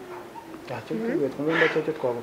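Speech: a person talking in a conversation, starting about two-thirds of a second in after a brief lull.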